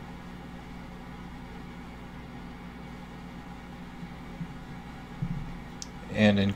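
Steady low background hum of room tone, with a faint tick or two near the end.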